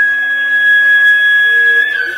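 Carnatic bamboo flute holding one long, steady high note, rising slightly near the end, over a faint steady drone.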